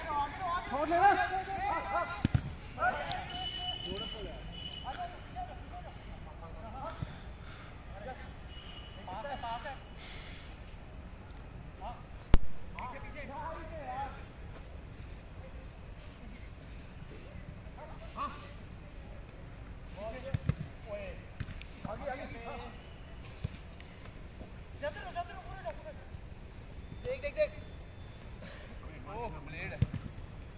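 Players' voices calling and shouting across the pitch, with occasional sharp thuds of a football being kicked, the loudest about twelve seconds in.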